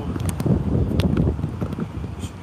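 Wind buffeting a phone's microphone, a low rumbling noise, with a few sharp clicks about a second in.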